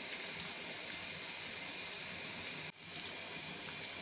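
Boiled potatoes and sliced onions sizzling in hot oil in a frying pan, a steady hiss, with a momentary break near three seconds in.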